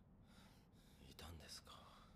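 Near silence, with a brief, faint voice a little over a second in.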